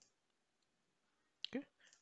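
Near silence, then a single short computer mouse click about a second and a half in, followed by a spoken "okay".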